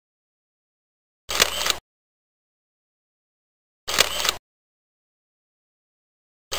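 The same short sound effect, about half a second long with a sharp hit at its start, plays twice, with dead silence between: an edited-in slideshow transition sound as each photo comes up.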